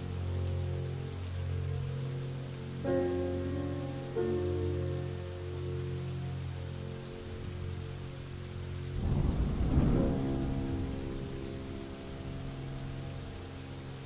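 Steady rain with a soft instrumental melody of held notes playing over it, and a rumble of thunder about nine seconds in, the loudest sound.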